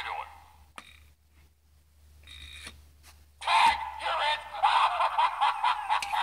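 Animated skeleton-hand candy bowl playing its recorded spooky voice phrase through its small built-in speaker, beginning about three and a half seconds in and sounding tinny.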